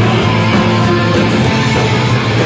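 Live punk rock band playing loud and steady, with electric guitars, bass and drums.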